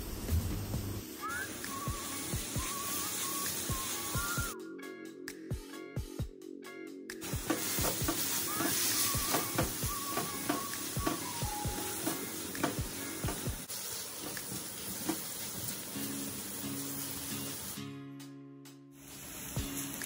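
Chopped vegetables sizzling in hot oil in a wok as they are stir-fried, with scattered clicks and scrapes of a spatula against the pan. Soft background music plays underneath.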